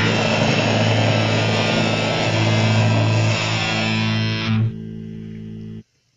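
Heavy metal band's closing distorted electric guitar and bass chord, held and ringing. About four and a half seconds in, the top of the sound drops away and the level falls, leaving a quieter low note that cuts off suddenly just before the end.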